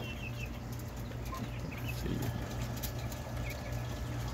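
Coturnix quails giving a few short, soft chirps here and there, over a steady low hum.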